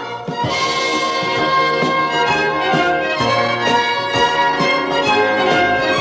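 Instrumental interlude of a Soviet song: the orchestral accompaniment plays on between verses, with no voice.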